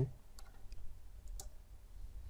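A few faint clicks of computer keys, the loudest about one and a half seconds in, as a selected line of code is deleted; a low steady hum runs underneath.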